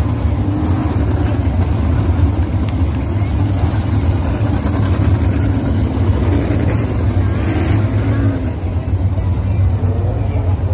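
A pack of 305 sprint cars racing, their V8 engines running hard and continuously, rising and falling in pitch as the cars pass.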